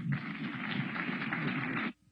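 Audience applauding steadily, cutting off abruptly just before the end.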